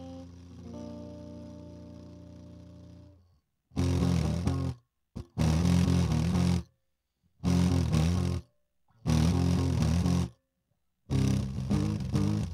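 Electric guitar played through a small 15-watt practice amp whose speaker cone has been sliced and stuck with sewing pins, with the amp's knobs at 5. A chord rings out and dies away over the first three seconds. After a short pause come four loud chords about a second long with gaps between them, then fast, choppy strumming near the end.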